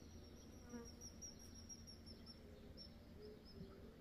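Near silence: faint outdoor garden ambience with a thin, steady high whine that fades out about halfway through.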